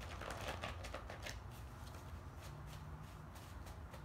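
A deck of tarot cards being shuffled by hand: a quick run of soft card flicks and riffles, thickest in the first second and a half, then sparser.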